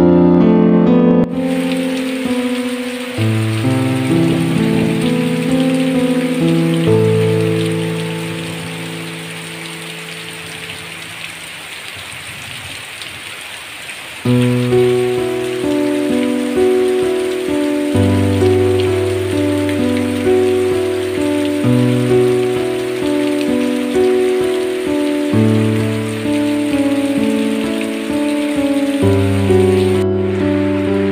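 Heavy rain falling steadily, starting about a second in. Soft keyboard music plays over it, fading out midway and coming back suddenly a few seconds later.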